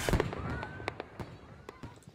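Fireworks crackling: scattered sharp pops with a faint whistle early on, dying away.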